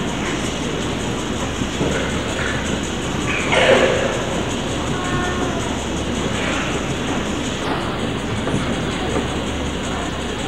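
Steady rumbling background noise with faint scattered voices, and one brief louder voice about three and a half seconds in.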